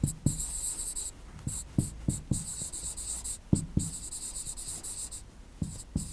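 Chalk writing on a chalkboard: a run of short, scratchy strokes with light taps as a word is written out, with a couple of brief pauses between strokes.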